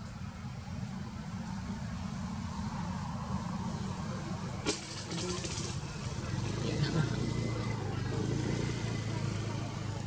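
A motor vehicle engine running steadily with a low rumble that gets a little louder in the second half, with faint voices in the background and a single sharp click about five seconds in.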